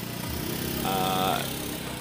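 A man's voice holding a drawn-out hesitation sound, one flat held tone for about half a second near the middle, over a steady low background rumble.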